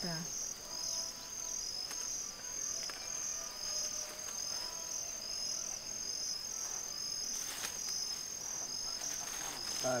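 A chorus of crickets chirping in a steady, high-pitched, evenly pulsing rhythm.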